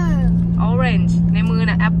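Voices talking over the steady low hum and rumble of a car's interior, one unchanging tone with a rumble beneath it.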